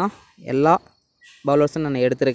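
A man's voice speaking in short phrases, with brief pauses between them.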